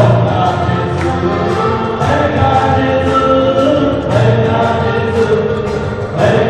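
A congregation singing a thanksgiving hymn together in a hall, clapping along in time.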